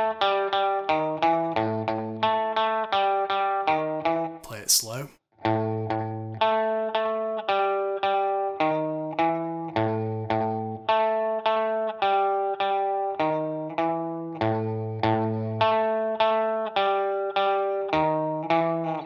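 Orange Gretsch hollow-body electric guitar playing a repeating octave blues riff in A, picked two hits on each note: low A, high A, then up through the D and E shapes, cycled round. The riff is played three times, with a short break and a brief scratchy string noise about five seconds in.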